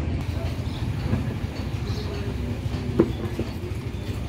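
A steady low rumble, with faint voices, and a single sharp click about three seconds in.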